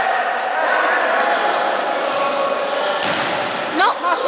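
Spectators and players, many of them children, shouting and calling over one another in an echoing sports hall during a youth futsal match, with a sudden loud cry rising steeply in pitch just before the end.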